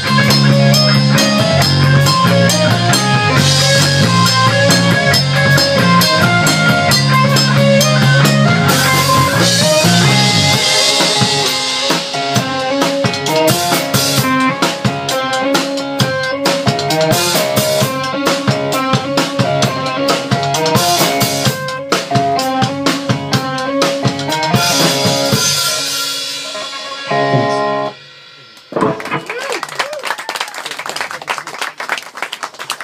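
Live rock band playing loudly with electric guitar and drum kit, snare and kick prominent; the song winds down and stops a couple of seconds before the end, and clapping starts.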